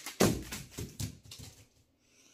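A thump about a fifth of a second in, then a few shorter knocks and rustles that die away: close handling noise.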